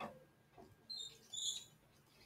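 Faint room sound with a short falling squeak at the start, then a few short high-pitched squeaks about a second in.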